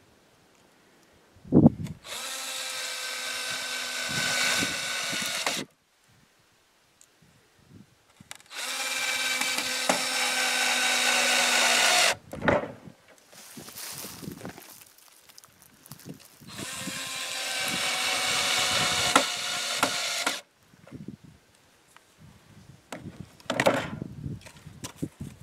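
Cordless drill running into wood in three separate bursts of about three and a half seconds each, its motor whine growing slightly louder through each burst. A sharp knock comes just before the first burst, with lighter knocks between them.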